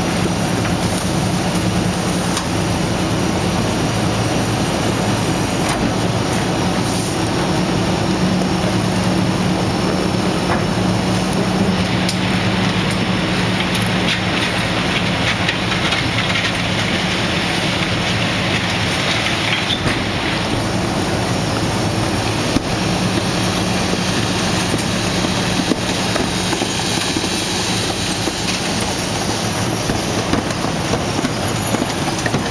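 Rear-loading garbage truck running its hydraulic packer to compact cardboard in the hopper, the engine humming steadily under load. A hissier stretch comes in the middle, from about twelve to twenty seconds in.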